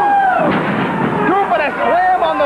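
A wrestler's body slammed onto the ring mat, giving one sudden heavy impact about half a second in, with a man's commentary over the crowd.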